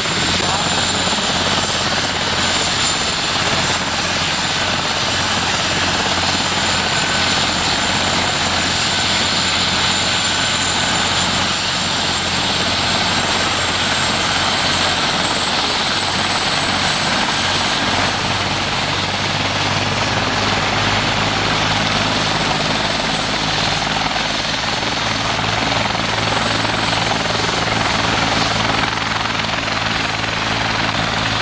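Agusta-Bell 412 search-and-rescue helicopter running on the ground with its main rotor turning: a steady high turbine whine over the rotor's beat. The low rotor beat grows stronger past the halfway point.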